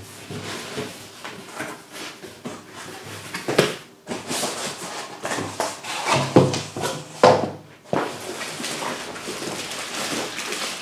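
Cardboard box flaps being opened and plastic-wrapped parts handled and lifted out of the box: irregular rustling and crinkling, with a few sharper knocks.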